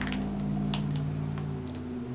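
A man's long, low, closed-mouth "hmmm" held steady for almost two seconds, a doubtful hum just before he says he doesn't like the scent. A faint crinkle of a plastic bag comes less than a second in.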